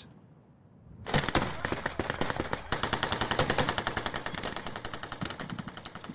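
Sustained rapid automatic gunfire, a dense run of sharp shots starting about a second in after a short quiet.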